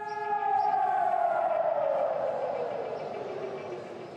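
Civil-defence siren sounding for Israel's Holocaust Remembrance Day, the signal for the nationwide two-minute standstill. Its single tone falls steadily in pitch and fades across the few seconds.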